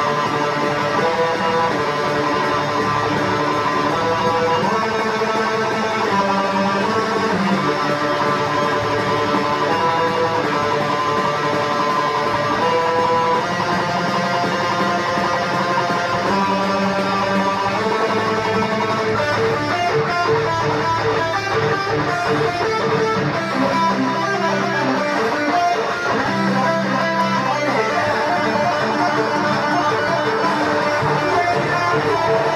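Ibanez RGR421EXFM electric guitar played through a Fender Frontman 25R amplifier, running continuously through a fast sequence of picked notes and riffs.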